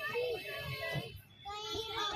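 A young child's voice in a sing-song: one drawn-out phrase, a brief pause, then a shorter phrase near the end.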